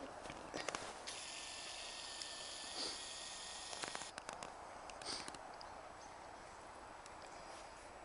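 Faint footsteps crunching in snow, with scattered crackles and light knocks. A thin high whine starts suddenly about a second in and stops suddenly at about four seconds.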